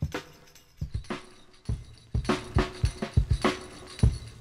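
A hip-hop drum break played from a vinyl record on a turntable: kick and snare hits in a steady beat, sparse at first and filling out about two seconds in.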